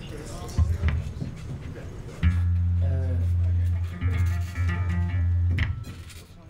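Electric bass guitar through an amplifier sounding a low note briefly about half a second in, then holding a low note for about three seconds with a couple of short breaks, as the band warms up before a song. Voices and a short laugh sound over it.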